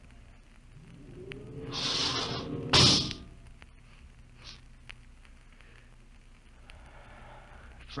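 Radio-drama sound effect of a spaceship's outer airlock opening: a hiss of air that swells over about a second, then a loud clank just before three seconds in.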